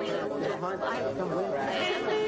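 Several voices chattering over one another, with no clear words.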